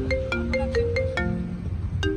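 Light, bouncy music: a quick melody of short, bright plinking notes, about five a second, over a soft low beat.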